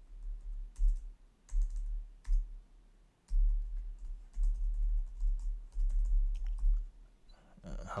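Computer keyboard being typed on: irregular keystrokes, some single and some in quick runs, each with a dull low thump.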